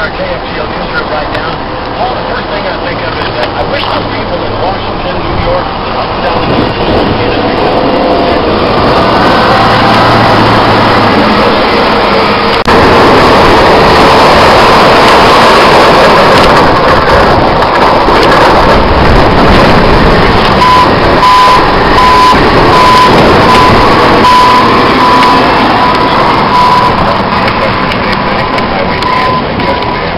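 Heavy diesel snow-removal machinery running in blowing wind, growing louder about halfway through as a Caterpillar wheel loader pushes snow. Over the last several seconds a backup alarm beeps at an even pace.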